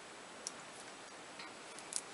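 Faint room tone with a few small, irregular clicks, one about half a second in and a couple near the end, from a nail polish bottle being handled.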